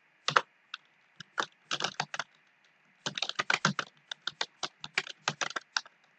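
Typing on a computer keyboard: irregular keystrokes, a few scattered ones at first, then a quicker run of them from about three seconds in.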